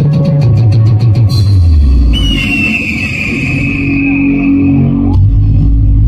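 A timli band's title song played loud through a big speaker system. Quick drum hits over a falling bass note give way, about two seconds in, to a long high tone sliding slowly down over a deep bass drone: the spooky opening of a ghost-themed title song.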